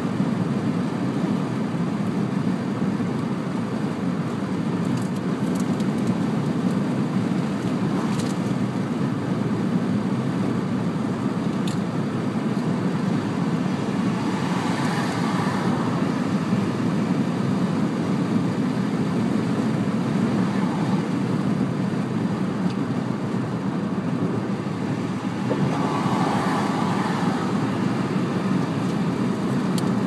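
Steady road noise inside a car's cabin at motorway speed: a constant low rumble of tyres and engine. Twice, around the middle and near the end, a brighter rush swells for a second or two.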